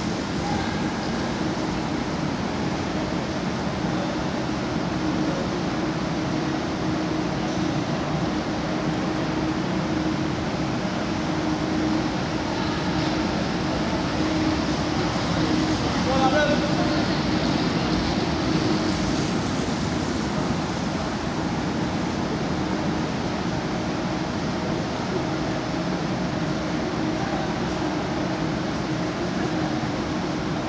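Indoor velodrome hall ambience: indistinct chatter of spectators over a steady hum.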